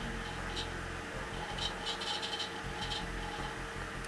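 Steady low hum and hiss of computers running, with a few faint ticks, while the laptop boots Windows XP.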